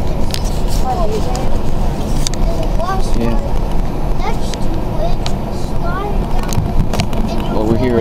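Steady road and engine rumble inside a moving car's cabin, with scattered sharp clicks and faint snatches of voices.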